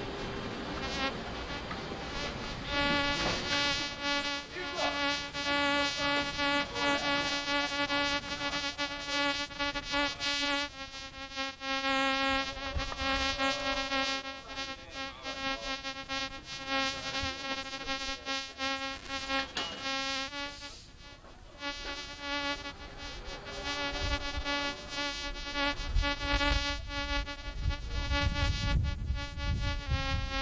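Steady electrical buzz from the ship's radar, picked up by the camcorder's audio as the antenna sweeps. It swells and weakens over several seconds and drops out briefly about two-thirds of the way through, with a low rumble building near the end.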